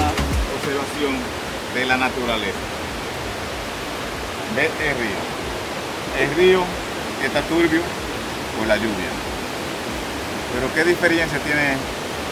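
Steady rush of river water running over rocks, with a man's voice speaking in short phrases over it.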